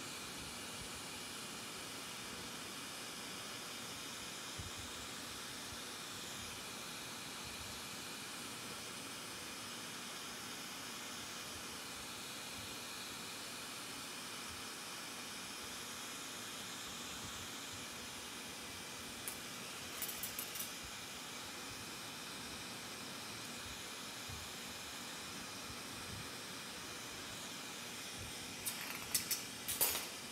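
Glassworking bench torch burning with a steady hiss while borosilicate glass is heated in its flame. A few sharp clicks come in about two-thirds of the way through, and a louder cluster comes near the end.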